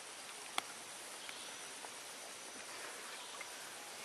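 Faint, steady riverside ambience: an even hiss with no pitch to it, broken by one small sharp click about half a second in.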